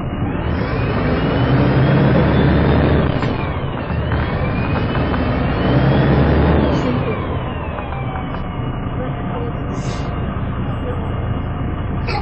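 MAN 18.220LF single-deck bus heard from on board, its diesel engine and drivetrain whine climbing in pitch under acceleration, dropping at a gear change about four seconds in, climbing again, then falling away as the bus eases off. A few short clicks come near the end.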